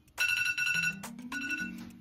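Phone alarm ringtone going off: a repeating electronic melody with bright pulsing beeps over a low stepped tune, signalling that the five-minute makeup timer has run out.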